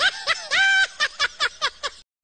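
High-pitched snickering laughter in quick repeated pulses, with one drawn-out note about half a second in.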